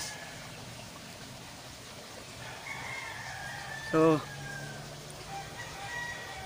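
Faint rooster crowing: one long call about halfway through, sliding slightly down in pitch, with a shorter faint call near the end.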